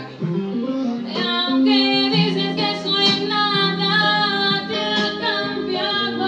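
A woman singing a song over backing music, holding long notes that bend in pitch.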